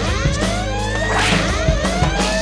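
Music with a steady bass line, overlaid with a run of quick swishing whooshes and a sharp hit about a second in: the punch-and-swish sound effects of a kung fu fight scene.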